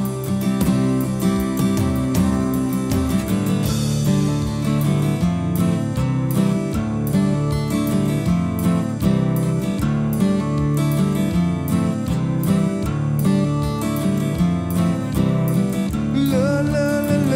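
Strummed acoustic guitar playing a steady rhythmic instrumental passage between sung verses, with no voice.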